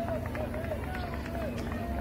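Distant spectators shouting and cheering in short calls, over a steady low rumble.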